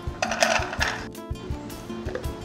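Carrot and celery pieces tipped from a small stainless steel bowl into a hand blender's chopper bowl, a brief clattering rattle starting about a quarter second in and lasting under a second, over background music with a steady beat.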